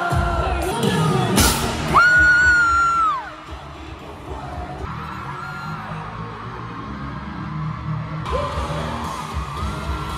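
Live K-pop concert sound in an arena: music with singing and a cheering, screaming crowd. A single loud bang comes about a second and a half in, followed by one long high voice note held for about a second. The sound then drops quieter for several seconds before picking up again near the end.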